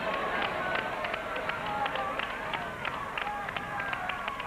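Wheel of Fortune's prize wheel spinning: its pegs strike the pointer's flipper in a steady run of clicks, about four a second. Voices call out under the clicking.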